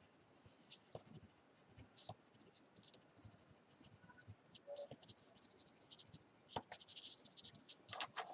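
Faint, quick, irregular strokes of a colored pencil scratching on watercolor paper as small dabs of red are added for flowers.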